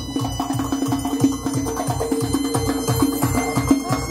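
Uzbek folk dance music: a doira frame drum beats a quick, steady rhythm, about four strokes a second, under a sustained melody.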